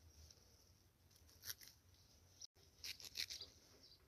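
Faint crisp snips of a small kitchen knife cutting through bunched coriander stems, a few quick cuts about a second and a half in and again around three seconds.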